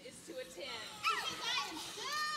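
A group of women's voices exclaiming and shrieking excitedly over one another, high-pitched with swooping rises and falls, not clear words.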